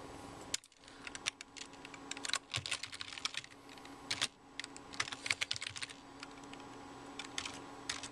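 Typing a password on a computer keyboard: quick bursts of key clicks for about five seconds, then a few single key presses near the end, over a faint steady hum.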